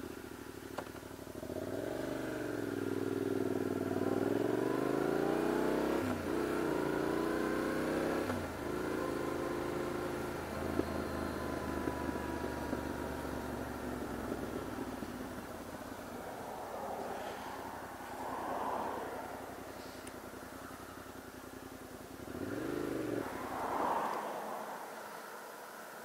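Adventure motorcycle engine under way: the revs rise and fall several times in the first few seconds as the bike pulls off and shifts gear. It then runs more steadily, with two short swells in engine speed near the end.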